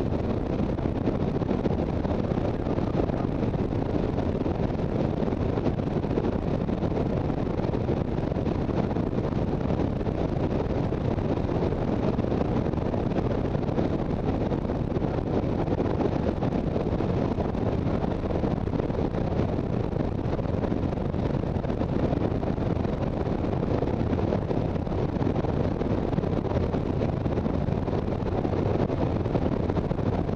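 Steady wind rush on the microphone of a motorcycle cruising at road speed, with the bike's engine and road noise underneath. It is unchanging throughout.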